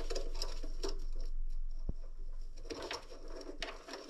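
Irregular light scraping and rubbing, a few strokes a second, with one sharp click about two seconds in.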